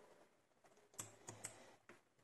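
Faint, small clicks from a lock pick and tension tool working in the keyway of a Zeiss Ikon R10 high-security cylinder lock: four clicks in the second half.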